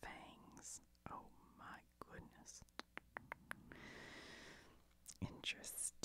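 Faint whispering with light clicks and a short rustle from handling plastic-sleeved trading cards in a binder.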